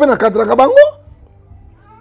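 A person's voice speaking in a drawn-out, wavering tone for about a second, then a pause.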